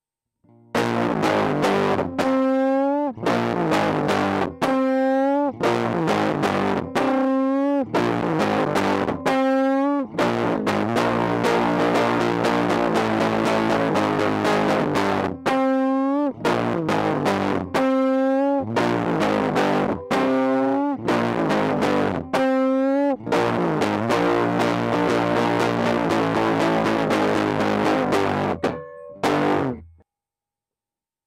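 Fender Jaguar electric guitar through a fuzz pedal set to 30% fuzz, into a JHS Colour Box V2 preamp, playing a distorted riff. Held chords alternate with a single note that slides upward, repeated over and over with brief gaps between phrases. It starts about a second in and cuts off just before the end.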